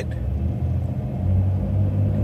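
Steady low rumble of a moving car's engine and tyres, heard from inside the cabin.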